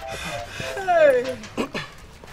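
A wailing cry that slides down in pitch about a second in. A repeating two-note beeping stops about half a second in.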